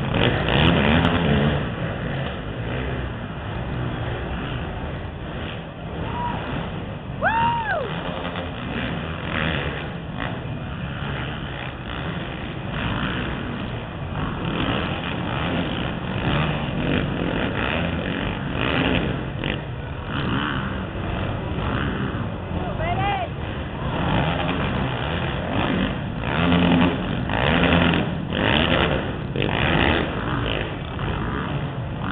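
Several racing ATV engines revving and changing pitch as a pack of quads races around a dirt arenacross track, the sound swelling and fading as they pass.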